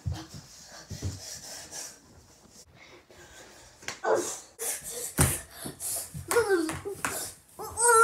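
A boy grunting and crying out with effort in short sliding vocal sounds as he wrestles with his own hand, the loudest near the end, with a few thumps against a wooden desk.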